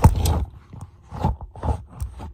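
Handling noise from a smartphone being gripped and moved, with fingers rubbing and bumping right at its microphone. There is a loud scraping rub at the start, then a few softer knocks and rustles.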